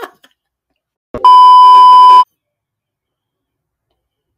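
A loud, steady, single-pitched beep lasting about a second, starting about a second in: an edited-in censor bleep tone.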